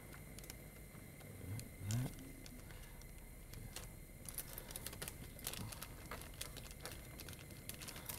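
Light crinkling and small clicks of a sterile peel-open packet, paper backed with clear plastic, being handled as a pipette is drawn out of it. The crackles come thicker in the second half.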